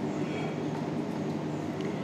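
Steady background hum and hiss of room noise, with faint marker strokes on a whiteboard.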